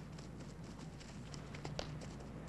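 A low steady hum and faint hiss, with a couple of faint short ticks near the end.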